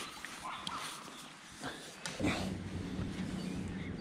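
Handling noise from a fishing landing net being unshipped from its pole and brought in close to the microphone: light clicks and rustles at first, then louder rubbing and rumbling from about halfway.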